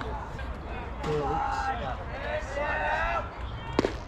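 Indistinct voices of spectators and players talking over a low background rumble, with one sharp knock near the end.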